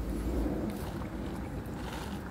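Low, steady rumble inside a car cabin, with faint noise above it.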